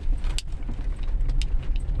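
Low, steady rumble of a car driving slowly, heard from inside the cabin, with a few light clicks about half a second in, about a second and a half in, and near the end.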